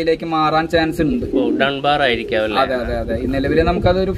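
Gaditano pouter pigeons cooing, low drawn-out coos, heard under people talking.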